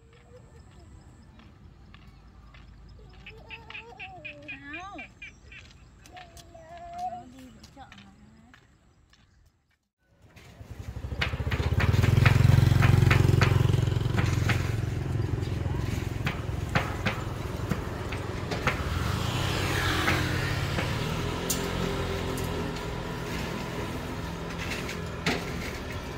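A faint voice, then, about ten seconds in, a switch to road traffic: a vehicle passes with a loud low rumble that swells and fades, followed by steady traffic noise.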